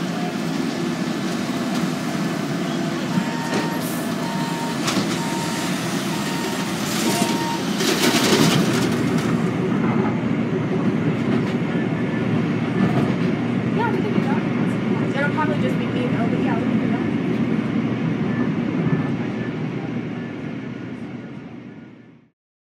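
A road milling machine and dump truck running, with a repeated beep during the first several seconds. About eight to ten seconds in it gives way to the steady rumble and rattle of a train ride past freight cars, which fades out at the end.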